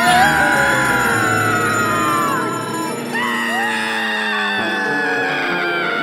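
Two long cartoon screams over background music, each held and sliding slowly down in pitch; the second starts about three seconds in.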